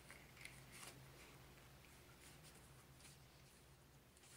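Faint rustling of paper pages as a spiral notebook is leafed through by hand, a few soft scrapes over near silence.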